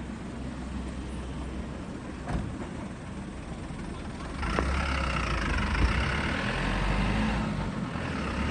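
Garbage truck with a ShinMaywa G-RX packer body, its diesel engine running with a low hum, with a single knock about two seconds in. From about four and a half seconds in the engine gets louder as the truck pulls away.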